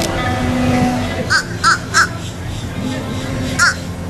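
A crow cawing: three short caws in quick succession about a second in, then one more near the end.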